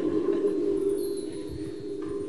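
A steady sustained low tone, with fainter high ringing tones above it, holding evenly through a pause with no laughter or speech.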